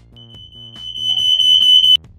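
Background music with a steady beat, over which a single high, piercing steady tone comes in, swells louder for nearly two seconds and cuts off abruptly near the end.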